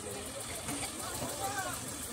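Diesel tractor engines idling steadily, with people's voices calling out over them.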